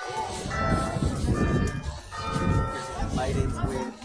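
Bells ringing: several steady, overlapping tones that start about half a second in, over a loud low rumble of street noise.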